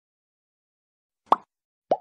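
Two short cartoon-style pop sound effects from an animated like-and-subscribe overlay, the first about a second and a quarter in and the second near the end, the second rising slightly in pitch.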